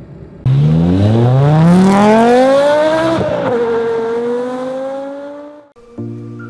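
A car engine accelerating hard as a sound effect: it starts suddenly and loud, its pitch climbing steeply, shifts gear about three seconds in, then pulls on more slowly in the next gear and fades away near the end.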